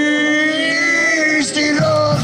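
A long, steady held note over a lower drone on a keyed string instrument, breaking off about three-quarters of the way through as the drum kit and the rest of the band come in.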